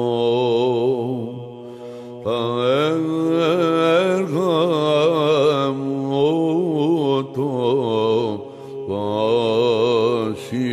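Byzantine chant in the plagal fourth mode (eighth tone): a male voice sings a slow, ornamented melody on drawn-out vowels over a steady held drone (ison), which shifts up once about two seconds in. The melody breaks off briefly twice, about two seconds in and near the end.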